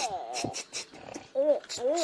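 A person's voice making wordless play noises: short cries that rise and fall in pitch, three of them, with light clicks from toys being handled.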